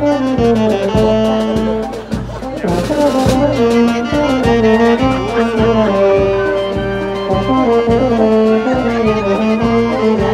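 A marching brass and woodwind band plays a melody in held notes over a steady drum beat, with a crash about three seconds in.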